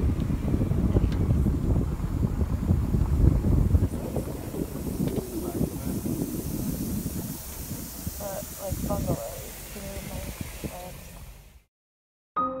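Wind rumbling on a handheld camera's microphone, heaviest in the first few seconds and easing off, with faint muffled voices about eight to nine seconds in. The sound cuts off suddenly just before the end.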